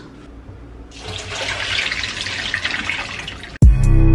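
Kitchen tap running steadily into a sink from about a second in. It is cut off suddenly near the end, when loud music with a beat starts.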